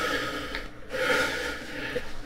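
A person breathing hard: two long, noisy breaths with a short pause between them, about three-quarters of a second in.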